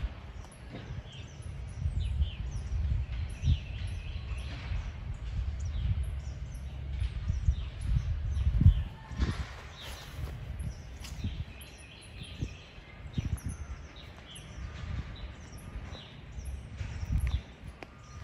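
Small birds chirping over and over in high, short notes, over an uneven low rumble of outdoor noise on a handheld phone's microphone, with a brief louder low bump about eight and a half seconds in.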